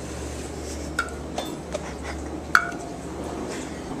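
A white ceramic baking dish clinking as it is handled: a few light clinks with short rings, the loudest about two and a half seconds in.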